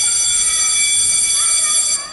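A loud, steady, high-pitched electronic buzz in the dance-routine soundtrack, held without change and cutting off suddenly at the end.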